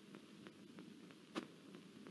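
Near silence in the soundtrack, with a few faint ticks and one short click about a second and a half in.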